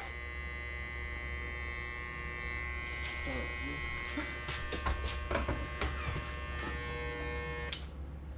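Electric hair clippers running with a steady buzz, then switched off near the end.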